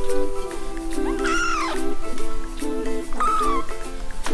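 Two short, high mews from three-week-old kittens, each rising and then falling in pitch: one about a second in and a shorter one past the three-second mark. Under them runs background music with a repeating melody.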